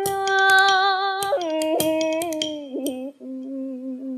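A woman singing in the ca trù style, drawing out one long ornamented vowel that steps down in pitch twice. Quick, sharp wooden clicks run along with the voice, mostly in the first half. These are typical of the phách, the bamboo clapper that a ca trù singer strikes herself.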